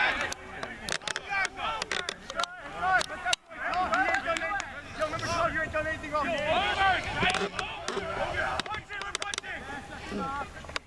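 Several voices shouting and calling out over one another, with a few sharp clicks among them.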